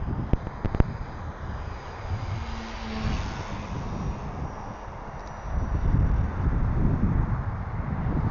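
Wind buffeting a small camera's microphone, heavier in the second half, with a faint high whine from an electric radio-controlled model plane flying overhead. A couple of sharp clicks come near the start.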